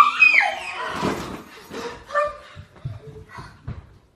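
Girls' high-pitched squeals and shrieks, loudest in the first second, trailing off into shorter, quieter yelps with a few low thumps.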